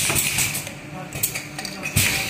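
Light metallic clinking and clicking as aerosol valves and aluminium cans are handled on a semi-automatic aerosol filling machine, with a hiss of compressed air near the start.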